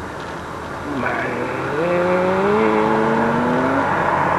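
A road vehicle's engine accelerating nearby: starting about a second in, its note climbs slowly and steadily for about two seconds over a rush of road noise.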